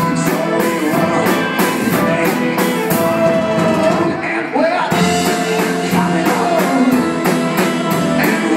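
Live band playing with electric guitar, accordion and violin over a steady beat, under a long held melody note. The beat drops out briefly about four seconds in and comes back a second later.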